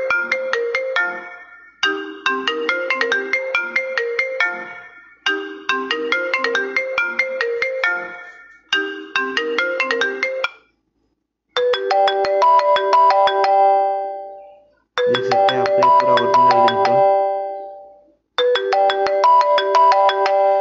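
iPhone-style ringtone played back on a phone: a marimba-like melody repeating every three to four seconds. It stops about ten seconds in, and after a short break a different ringtone melody starts and repeats three times.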